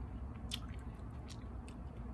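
A person chewing a mouthful of pudding and shortbread, with a few faint, sharp clicks, over a low steady background rumble.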